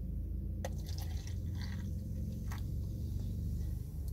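Soda poured from a plastic bottle into a plastic cup, with a few small clicks and a soft splashing patch in the middle, over a steady low hum inside the car cabin.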